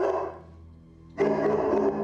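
Background music score: a held chord fades out, and after a short lull a new sustained chord comes in about a second in.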